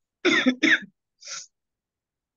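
A person coughs twice in quick succession, followed by a fainter, breathy sound about a second in.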